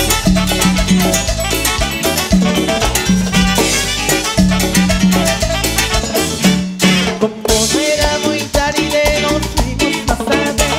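Live cumbia band playing a steady dance beat with bass, drums and percussion and no lead vocal. The percussion briefly drops away about seven seconds in.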